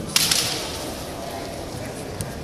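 A single sharp crack of a bamboo shinai striking during a kendo exchange, a fraction of a second in, trailing off briefly.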